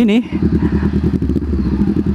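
Honda CB500X's parallel-twin engine running steadily with a fast, even pulse as the bike is ridden slowly over a broken road.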